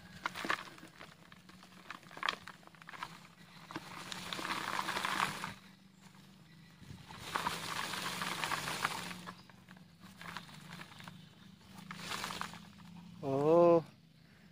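Hands picking and scraping compacted potting soil from a ficus root ball, the soil crumbling and pattering into a plastic tub in rustling bursts of a couple of seconds each, with small clicks between them.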